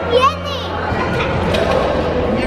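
Young girls squealing and shouting excitedly, with a high sliding squeal at the start and a jumble of excited voices after it.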